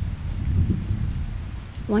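Steady rain with a low rumble of thunder that peaks about half a second in and then slowly dies down.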